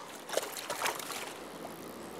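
Shallow river water running and sloshing, with a few small splashes in the first second.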